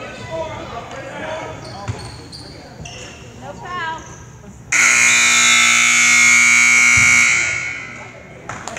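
Gymnasium scoreboard buzzer sounding the end of the quarter: one loud, steady horn blast that starts about halfway through and lasts about two and a half seconds. Before it come crowd voices and a basketball bouncing on the hardwood floor.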